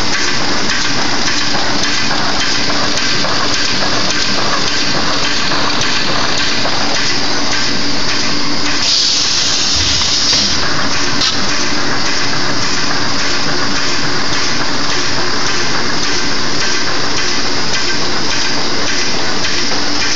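Plastic bag-making machine running continuously: a loud, dense mechanical clatter with an even, rapid beat of strokes over a steady hum, and a brief burst of hiss about nine seconds in.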